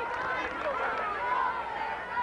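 Football crowd in the stands, many voices talking and calling out over one another in an unbroken babble.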